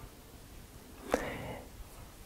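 A man's short mouth click about a second in, followed by a soft, breathy intake of breath.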